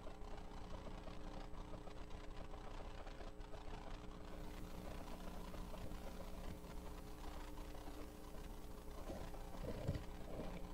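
Low, steady electrical mains hum from the church sound system, with faint room noise and a brief knock near the end.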